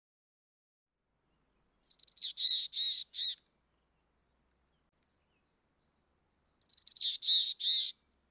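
A bird calling the same short phrase twice, about five seconds apart. Each phrase opens with quick high notes that step down, then runs into four or so evenly spaced lower notes.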